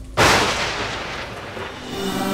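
A sudden loud boom just after the start that dies away over about a second and a half. It is a dramatic impact sound effect of the kind TV serials use to punctuate a scene change.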